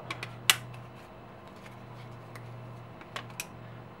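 Thin aluminium soda-can sheet being bent and pressed around a PVC tube by hand, giving scattered light clicks and crinkles, the sharpest about half a second in. A steady low hum runs underneath.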